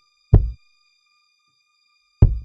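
A single deep, low thump about a third of a second in, dying away within a quarter second. It is one beat of a song's sparse, heartbeat-like opening drum pattern, over faint steady high tones.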